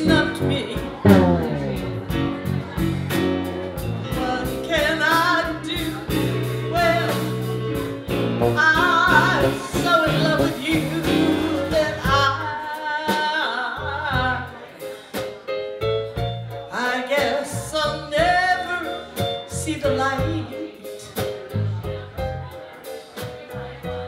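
A woman singing live into a handheld microphone, backed by a band with drums and keyboards.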